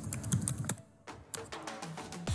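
Typing on a computer keyboard: a quick run of key clicks, a short pause about a second in, then more keystrokes.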